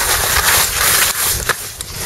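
Wind rushing over a skier's body-mounted camera microphone along with skis hissing over snow on a fast run. Near the end come a few sharp knocks as branches catch the camera.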